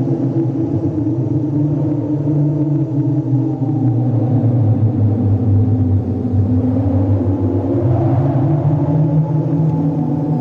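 Low, dark ambient drone: steady deep tones over a rumbling bed, swelling a little about eight seconds in.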